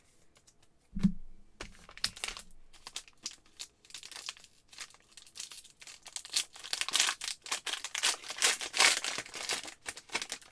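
Foil trading-card pack being torn open and its wrapper crinkled in the hands, the crackling thickest in the second half. A single sharp knock about a second in.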